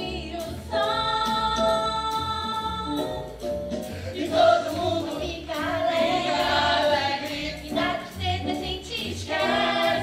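A stage-musical song number: several voices singing held notes together over instrumental accompaniment with a steady beat.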